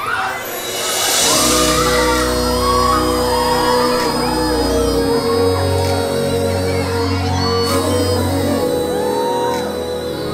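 Live concert music starting about a second in: sustained keyboard chords over a deep bass, with the audience cheering and whooping over it.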